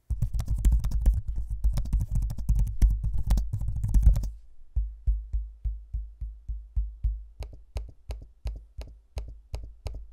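Typing on the Asus ROG Flow Z13's detachable keyboard cover: a fast run of key clicks, which after about four seconds gives way to slower single clicks, about three a second, of the trackpad being pressed.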